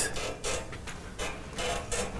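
Chalk writing on a blackboard: a run of irregular short taps and scrapes as symbols are written.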